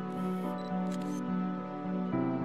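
Soft background music of long held tones, with a camera-shutter sound effect clicking in the first second.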